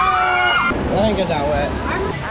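Raft riders screaming as water spray pours over them on a river-rapids ride, with a steady rush of water. The screaming cuts off abruptly under a second in, and lower voices follow over water and wind noise.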